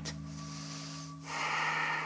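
A woman breathing audibly as she moves into a twisting lunge: a soft breath, then a louder breath from about a second and a half in.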